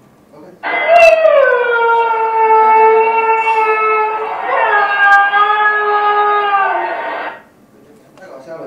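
Siberian husky howling, from a recording played back. The first long howl slides down at the start and then holds steady, and a second howl takes over about halfway through with no gap before it cuts off near the end.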